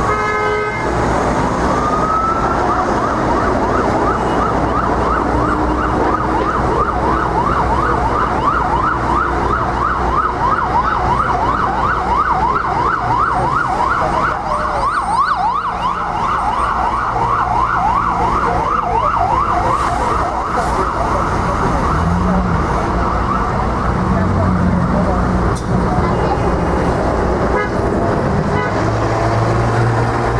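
Ambulance siren passing through heavy street traffic: a slow rising-and-falling wail for the first few seconds, then a fast yelp that runs until about twenty seconds in and fades. Steady traffic noise lies underneath, with a bus engine near the end.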